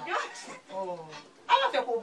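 A person's voice in short pitched utterances, a brief pause, then a louder outburst near the end.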